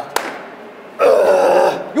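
A man's long, loud grunt of strain, lasting almost a second, as he hauls himself up a climbing rope. A short sharp knock comes just before it.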